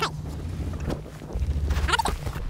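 Wind buffeting the action camera's microphone as the snowboarder moves through deep powder, a steady low rumble that grows louder about halfway through.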